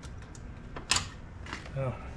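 Faint handling noise with one sharp click about a second in, from parts being worked at a truck's hood latch and radiator support.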